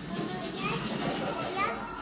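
A young child's voice, babbling and calling out, with other voices in the room.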